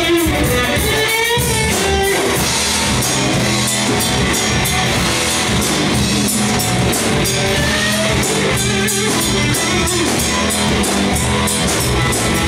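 Live rock band playing an instrumental passage: amplified electric guitar with bending notes over bass guitar and drum kit.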